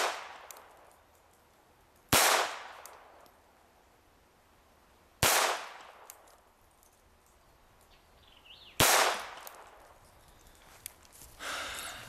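Three shots from a Walther P22 .22 LR pistol, fired a few seconds apart, each followed by a fading echo.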